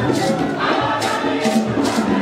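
Choir singing a Christmas carol to instrumental accompaniment, with a percussion beat about three strokes a second.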